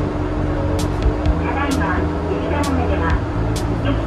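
Yurikamome Line elevated train running, heard from inside the car: a steady low rumble with a steady hum, a voice over it, and a sharp high tick about once a second.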